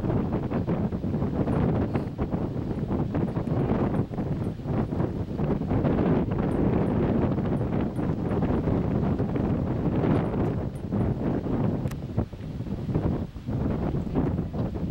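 Wind buffeting the microphone: a loud, gusty rumble that wavers throughout and eases briefly near the end.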